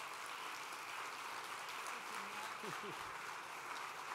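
Audience applauding steadily, with a few faint voices mixed in.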